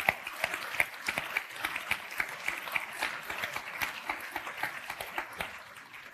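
Audience applauding, a dense patter of claps that thins and fades out near the end.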